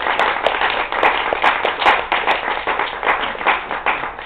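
Audience applauding with many hands clapping at once, welcoming a speaker.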